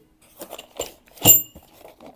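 Small metal hardware from a suspension kit clinking in a cardboard box as a hand rummages through it: a few light clicks, then one sharp, ringing metallic clink about a second and a quarter in.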